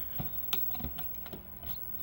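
A handful of light, sharp plastic clicks and taps, about five over two seconds, from a hand working a cable plug and the power switch on a PC Engine CoreGrafx console.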